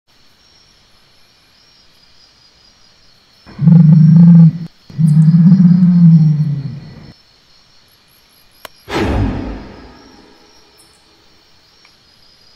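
Two long, deep dinosaur growls, the first starting about three and a half seconds in and the second right after it, over a steady high chirping of night insects. About nine seconds in comes a sudden loud hit that dies away over about a second.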